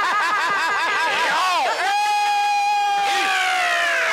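A person's voice, quickly wavering up and down in pitch, then holding one long note for about a second that slides down near the end.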